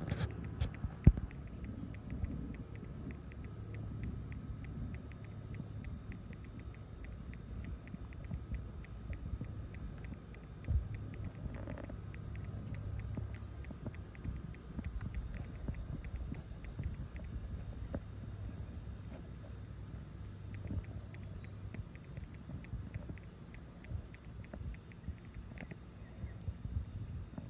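Faint outdoor background noise: a steady low rumble with scattered faint clicks and a faint steady high tone.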